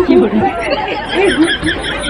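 Several people's voices talking over one another, loud and jumbled.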